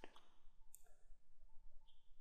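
Faint computer mouse clicks: a sharp click at the start, another about three-quarters of a second in, over a low steady hum.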